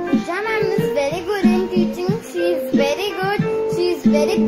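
A girl singing a song over an instrumental accompaniment of long held notes, her voice sliding between pitches.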